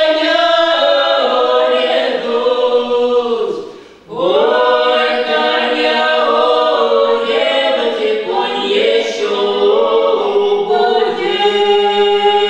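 A small folk ensemble singing a Russian Cossack song a cappella in harmony, with women's voices leading. There is a short break between sung phrases about four seconds in.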